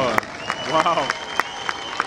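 Scattered hand clapping from a crowd of onlookers, a few claps at a time, with people's voices among them, just as the show music stops.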